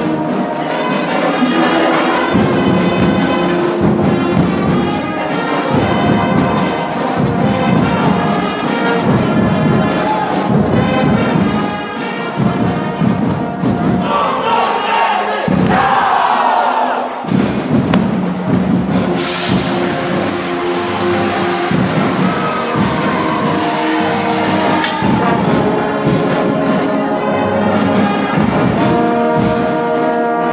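A school marching band playing loudly: trumpets and trombones over a steady beat of marching drums. About halfway through the brass slides down in pitch, followed by a bright, noisy wash lasting several seconds.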